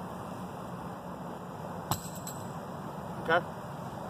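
Thrown weight landing with a single sharp knock about two seconds in, over a steady low background hum.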